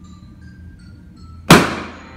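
A red rubber balloon popped with a pin: one sharp, loud bang about one and a half seconds in, dying away quickly.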